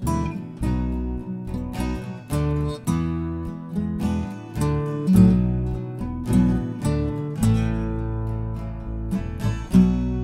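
Acoustic guitar strumming chords in an instrumental break of a folk song with no singing, each strum ringing on until the next.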